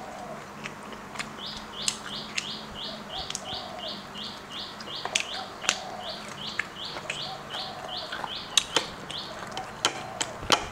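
A bird calls a quick run of short, high, rising chirps, about three a second for some six seconds, while a lower call repeats every couple of seconds. Over it come sharp clicks and crunches of chewing close to the microphone.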